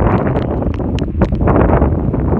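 Strong cyclone wind buffeting the microphone in heavy rain, with many short sharp ticks scattered through the rushing noise.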